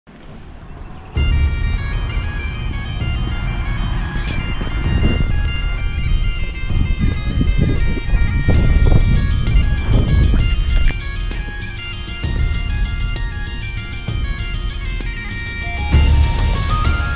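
Bagpipe music with a steady drone under the melody, coming in suddenly about a second in.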